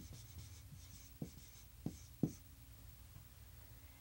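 Marker writing on a whiteboard: faint scratching with a few short, sharp strokes, stopping about two and a half seconds in.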